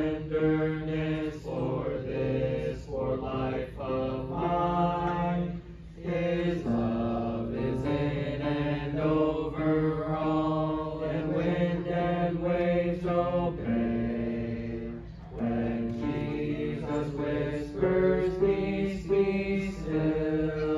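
A small group of voices singing a hymn together in held, steady notes, the phrases separated by brief pauses.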